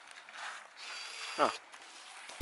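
A faint, high-pitched squeak lasting under a second, heard about halfway through, with a short spoken 'oh' at its end.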